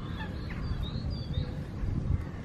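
Faint, short bird calls in the first half, over a low rumble.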